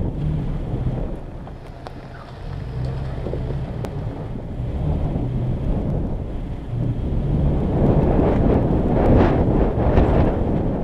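2019 Toyota Tacoma engine running at low trail speed, with tyres rolling over dirt and gravel and wind buffeting the microphone. The rumble grows louder and rougher over the last couple of seconds.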